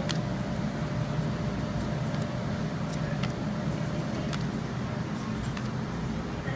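Steady low background hum, with a few soft clicks as trading cards are handled and flipped through by hand.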